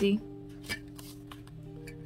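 Paper banknotes rustling and crackling as they are handled, with one crisper crackle under a second in, over soft instrumental background music.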